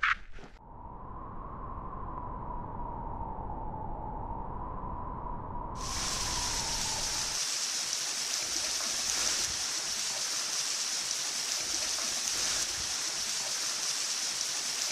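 A low rumble with a faint wavering tone, then, about six seconds in, a sudden switch to the steady rushing hiss of a waterfall.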